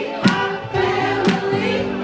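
Young women singing live into handheld microphones over loud recorded music, with a sharp beat about once a second.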